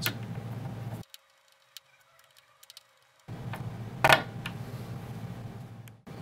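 Faint ticks and clicks of a small screwdriver tightening the screws of a small screw terminal block, over a steady low hum. The hum drops out to near silence for about two seconds, and one sharp click comes about four seconds in.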